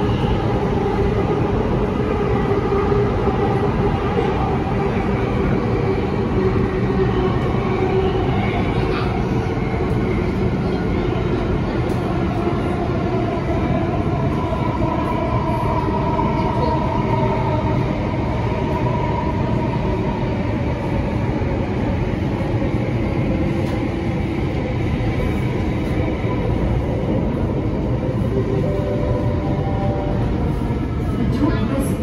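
Inside a Bombardier Movia C951 metro car while it runs between stations: a steady, loud rumble of wheels and car body, with a faint whine from the traction motors that slowly drifts in pitch.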